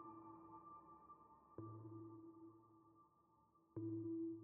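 Faint ambient background music of sustained electronic tones, with two soft ping-like attacks about one and a half seconds in and near the end, each fading slowly.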